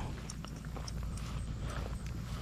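Faint outdoor background: a low steady rumble with scattered small ticks and rustles, no clear single event.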